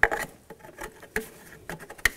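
Plastic hose fittings being pushed onto a secondary air pump: a sharp click at the start and another about a second in, with light rubbing and small ticks as the hoses are handled.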